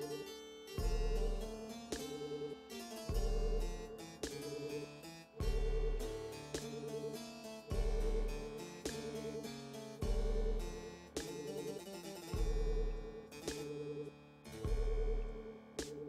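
Electronic keyboards played over a repeating loop: each cycle opens with a deep bass note and a fast trilling figure, coming round a little more often than every two seconds, with quick runs of played notes layered on top.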